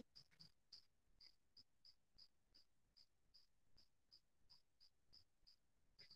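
Near silence, with a faint, high insect chirp repeating evenly about three times a second.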